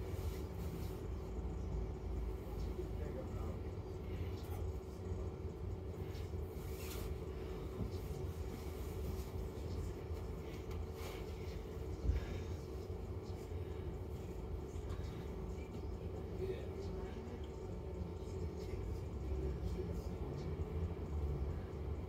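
Interior of a London double-decker bus's upper deck while the bus idles in traffic: a steady low engine rumble with a constant hum. A single sharp knock comes about twelve seconds in.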